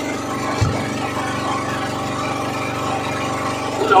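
A small engine on the fishing boat idling, a steady even drone. There is a brief low knock about half a second in and a short voice exclaiming "oh" right at the end.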